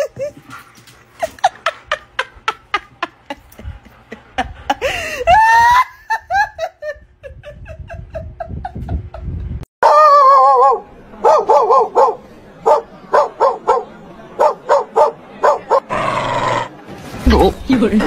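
Dogs vocalizing: a short high call rising in pitch about five seconds in, then a dog giving a quick run of barks over several seconds, mixed with a person's voice.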